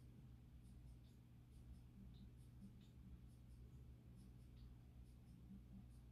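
Near silence: room tone with a steady low hum and faint, scattered ticks.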